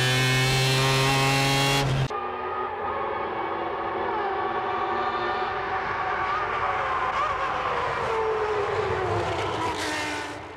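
A naturally aspirated racing engine held at very high revs, heard from inside the car, its note climbing steadily. It cuts off suddenly about two seconds in. A different, quieter vehicle-like sound follows, with a tone that slowly falls.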